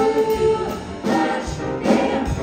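Vocal jazz choir singing in harmony into microphones, backed by a rhythm section of drum kit and piano. The voices hold a chord at first and then move on, with a few sharp drum hits in the second half.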